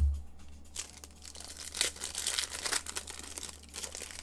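A low thump at the very start, then a foil trading-card pack being torn open, its wrapper crinkling and rustling in irregular bursts for about three seconds.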